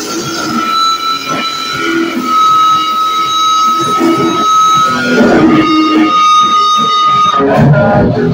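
Live band playing loud, with an electric guitar holding one long high note for about seven seconds before the rest of the band comes back up.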